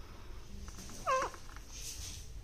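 A rose-ringed (Indian ringneck) parakeet gives a single short, falling call a little over a second in, with faint scratches of its feet or beak on the mirror.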